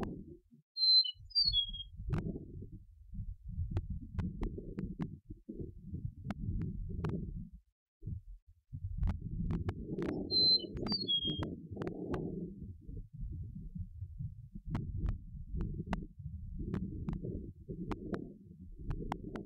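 Eastern meadowlark singing two short whistled song phrases of a few clear, slurred notes, about a second in and again about ten seconds in. An uneven low rumbling noise runs underneath for most of the time.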